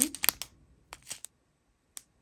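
Short crinkles and clicks of thin plastic zip bags full of resin diamond-painting drills being handled: a quick cluster in the first half-second, a few more about a second in, and a single sharp click at the end.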